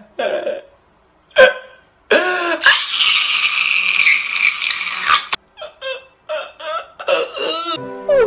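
A man crying hard: a sharp cry, then a long, loud, high wail of about three seconds, followed by a string of short sobbing gasps.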